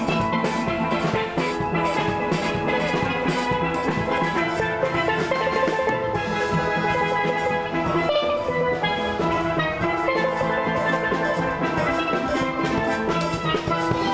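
A steel band playing: many steel pans struck with sticks ring out melody and chords over a steady drum beat.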